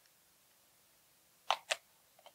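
Two short clicks about a fifth of a second apart, near the end of an otherwise near-silent stretch, as the Sony ECM-HGZ1 microphone's mount is pressed onto the camcorder's Active Interface shoe.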